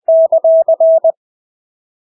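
Morse code (CW) sent at 20 words per minute with Farnsworth spacing: a single steady tone keyed into one character of alternating dahs and dits, about six elements in a second.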